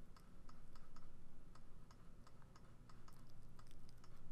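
Faint, irregular clicking of a computer mouse, roughly four or five clicks a second, while the brush tool is dabbed onto a layer mask. A low steady hum sits underneath.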